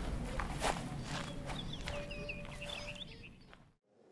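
Recorded soundscape playing through the theatre: scattered knocks and clicks over a low rumble, with a brief held tone and high, bird-like chirping in the middle. It fades away to silence near the end.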